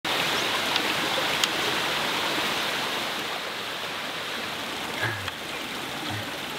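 Shallow stream running over rocks, a steady rushing and babbling of water that eases slightly toward the end. There is a short, soft low bump about five seconds in.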